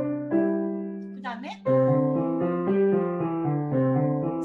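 Yamaha grand piano playing a five-finger technique exercise: even, stepwise notes over a held low note. About a second in, the playing breaks off for a brief spoken word and starts again.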